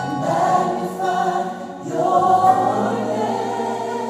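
Gospel choir music: a choir singing held chords. There is a short dip just before two seconds in, then it comes back louder.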